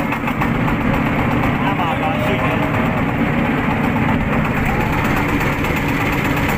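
Motorboat engine running steadily while the boat travels across the lake.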